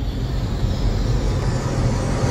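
Cinematic intro sound effect: a noisy whoosh that swells and grows louder over a low rumbling music bed.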